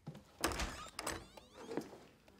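A door handled and shut: a heavy dull thunk, then a second knock with a brief rattle of the latch, and a lighter knock near the end.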